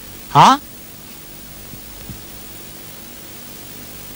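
A single short, loud vocal exclamation, a brief shout rising in pitch, about half a second in. Steady hiss fills the rest.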